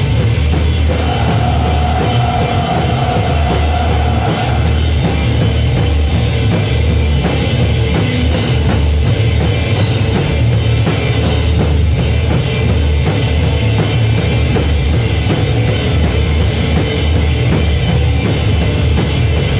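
Live rock band playing loudly, with a drum kit and bass guitar driving a steady beat. A long held note sits over the band from about one to four and a half seconds in.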